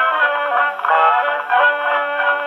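1920s dance-band fox trot played from a Pathé 78 rpm disc on an acoustic Pathé VII phonograph. The orchestra sounds thin and horn-like, with no deep bass and no high treble.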